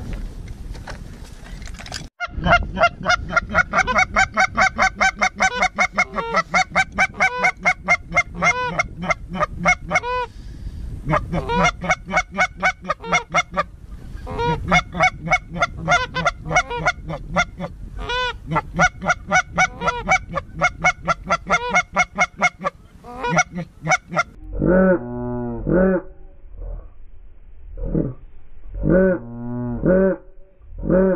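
Goose honking in a fast, even string of about four to five calls a second, with a couple of short breaks. In the last few seconds it turns to slower, lower, drawn-out calls.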